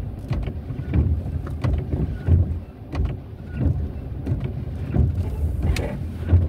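Car cabin noise while driving slowly over a wet brick street: an uneven low rumble of engine and tyres, with scattered small clicks and knocks.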